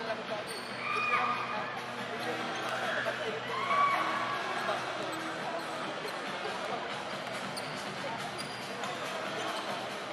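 A basketball being dribbled on a hardwood court over steady crowd chatter. Two short high-pitched squeals stand out, one about a second in and a louder one near four seconds.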